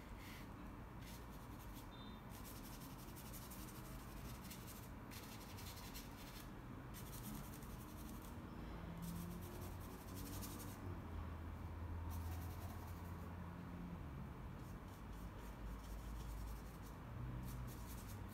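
Faint, scratchy strokes of a paintbrush's bristles working acrylic paint across a canvas, coming in short runs with brief pauses between them.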